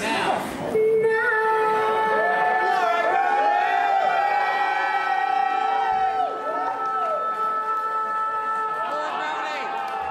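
A singer holds one long final note over the backing music while the audience cheers and whoops over it.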